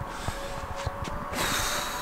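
A man blowing out a breath through pursed lips, a short hiss of air near the end, over a faint steady hum.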